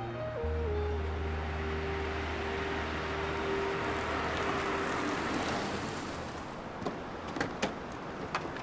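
Background music with held notes over a low bass, fading out after the middle, as a car drives up and comes to a stop. A few sharp clicks near the end.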